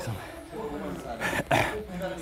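A man breathing hard, out of breath after intense boxing pad work, with a short harsh breath or cough-like exhale about a second and a half in.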